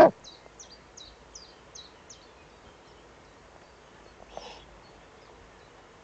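The tail of a loud Eurasian eagle-owl call cuts off at the very start. After it come faint, quick, high chirps from a small songbird, about ten notes in the first two seconds, and a short soft call about four and a half seconds in.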